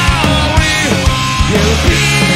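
Punk rock band playing live: a male singer's voice over electric guitars, bass and drums, loud and dense, with steady drum hits throughout.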